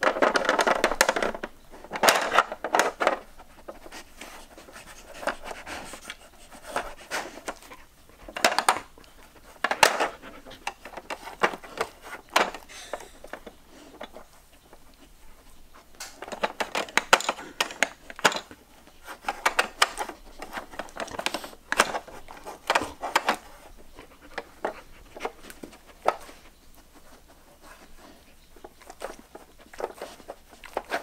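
A Samoyed working a plastic Trixie Move2Win dog puzzle board with its nose: irregular clicks, knocks and scrapes of the plastic board and its sliding pieces, louder in a few short clusters.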